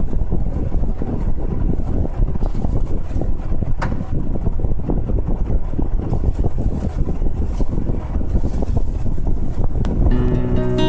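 Compressed-air paint spray gun spraying thin epoxy paint: a steady, loud rush of air, with one brief click a little under four seconds in.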